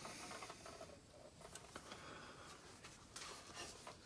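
Faint handling noise as a Sundown SCV-3000D car amplifier's metal case is lifted and turned over by hand: light rubbing with a few small clicks.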